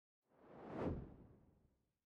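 A single whoosh sound effect for an editing transition, swelling up and fading away within about a second.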